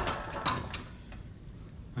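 Faint metallic clicks from a seated cable row machine's bar and cable as a wide grip is taken, a few in the first second, then quiet.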